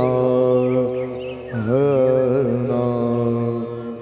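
Male voices singing long, wavering held notes of a Varkari kirtan melody (chal), dipping in pitch about a second and a half in, over a steady low drone. The singing fades toward the end.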